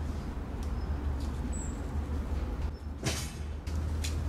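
Outdoor background: a steady low rumble, with a single short, high bird chirp about a second and a half in and a brief rush of noise about three seconds in.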